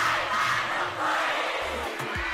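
A large crowd of students shouting and cheering together, many voices at once.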